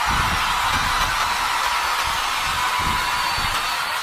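Steady hiss picked up by a handheld condenser microphone, with soft, irregular low bumps of handling noise and no music.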